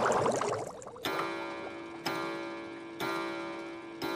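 A cartoon bubble-transition swirl for about the first second, then a clock ticking once a second, each tick ringing on briefly.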